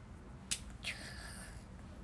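A single sharp click, like a finger snap, about half a second in, followed by a short high-pitched tone that dips in pitch and then holds briefly.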